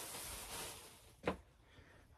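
Soft rustling of a handled plastic bag and fabric, fading out about a second in.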